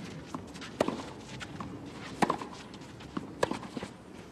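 Tennis ball struck back and forth in a rally on a clay court: three sharp racquet hits about a second and a half apart, with players' footsteps on the clay between them.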